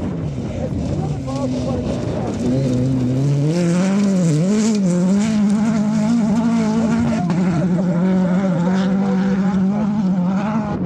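Renault Clio rally car's engine working hard on gravel: its pitch falls in the first second, then climbs about two and a half seconds in as the car accelerates. The pitch wavers as the car slides, then holds high and loud.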